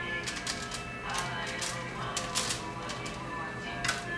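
Small metal knife clicking and scraping irregularly against a foil-lined pan while a wonton wrapper is pressed shut, over faint background music.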